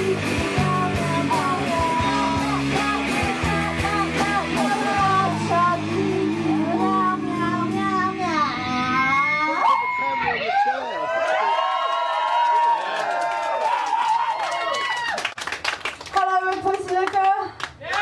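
Punk band playing live, with distorted electric guitars, bass, drums and a shouted vocal, until the song ends about halfway through. After that come voices calling out and a few loose guitar sounds between songs.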